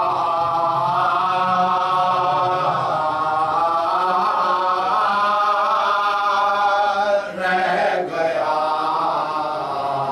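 A man chanting a salam, an Urdu devotional poem, unaccompanied, in long held melodic lines into a microphone. There is a short break a little past the middle.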